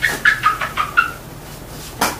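Whiteboard eraser squeaking as it is wiped across the board: about six short, quick squeaks in the first second, then quiet rubbing.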